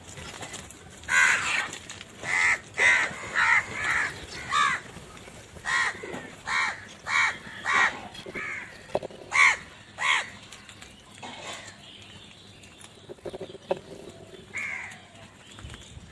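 House crows cawing: a dense series of loud caws overlapping one another, repeated several times a second, for most of the first ten seconds. Then the calling thins out, with one more caw near the end.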